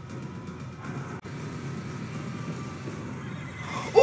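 Quiet low rumble of a TV drama's soundtrack, with a horse starting to neigh near the end.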